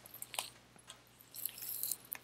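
Tarot cards being handled: faint, soft rustling as a card slides, with a couple of small clicks about half a second in.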